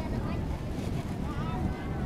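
Wind rumbling on the microphone, with the voices of children and people calling and chattering in the background.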